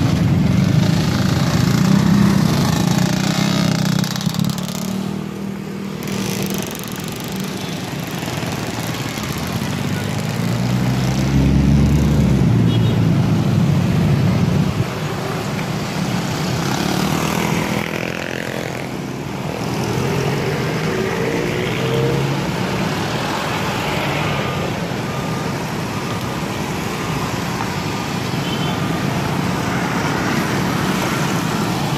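Slow, dense street traffic: many motorcycle and car engines running close by, with one engine revving up and down about ten to thirteen seconds in.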